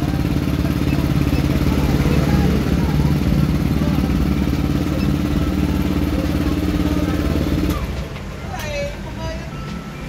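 Yamaha Aerox scooter's fuel-injected single-cylinder engine idling steadily at a still too-high idle after its idle speed control (ISC) has been reset. It is switched off abruptly about eight seconds in.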